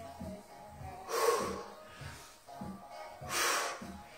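A woman exhaling hard through the mouth twice, about two seconds apart, on the effort of dumbbell squat-to-shoulder-press reps. Background music plays under it.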